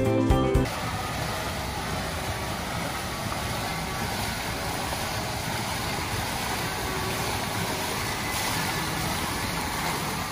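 Water spilling over a stone fountain's edge, a steady rushing splash with no rhythm, after background music cuts off just under a second in.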